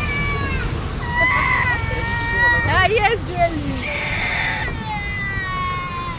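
A high singing voice holds long, wavering notes, with a quick run of warbling pitch about halfway through. Beneath it is a steady low rumble of wind and road traffic.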